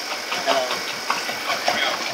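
Bravo Trittico batch freezer running, a steady mechanical hum with a high hiss, with brief indistinct voices over it.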